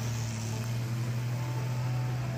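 Old farm tractor's engine working hard under load as it drags a weighted sled in a tractor pull: a steady low drone.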